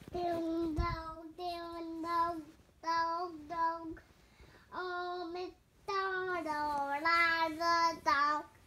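A young child singing in held, high notes, phrase after phrase, with a few short pauses.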